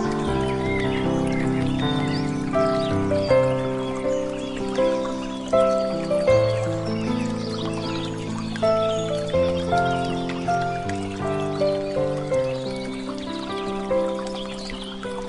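Slow, calm instrumental music: single notes struck one after another, each fading away, over held low notes. Birdsong chirps faintly behind the music.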